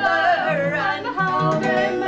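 Live folk song: women singing in harmony with their voices sliding between held notes, accompanied by a strummed acoustic guitar.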